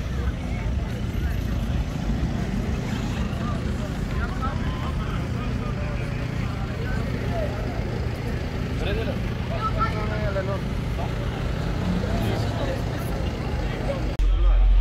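Audi A6 Avant's engine running at low speed and idling, a steady low rumble, with people chattering in the background.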